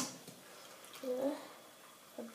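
A short voiced murmur, like a brief hum or half-word, about a second in. Otherwise only low room tone follows the last knock of the spatula on the pan.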